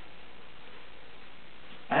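Steady, even hiss of room noise with no distinct knocks or clicks, and a man's voice starting right at the end.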